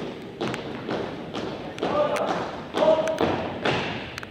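A four-person color guard's boots striking a hardwood gym floor in step, about two steps a second, echoing in the hall. Two short shouted drill commands come about two and three seconds in, as the squad comes to a halt.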